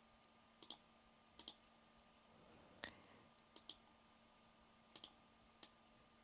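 Faint computer mouse button clicks, a click or a quick double click every second or so, over a faint steady hum.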